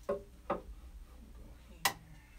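Short knocks of a wooden 2x4 brace being set against the wooden benchwork frame: a softer knock about half a second in and a sharp, loud one near the end.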